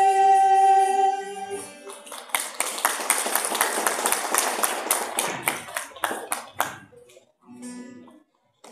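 A live band's song ends on a long held note, then an audience applauds for about five seconds, the clapping dying away near the end.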